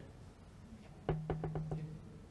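A microphone being switched on and handled: about five quick knocks in under a second, with a steady low hum that comes in with the first knock.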